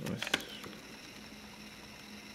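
Quiet room tone with a faint steady hum. A couple of soft, short handling noises come in the first half second.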